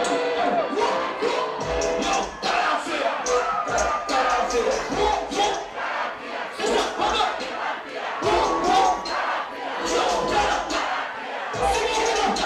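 A club crowd shouting and singing along over music with a thumping bass beat.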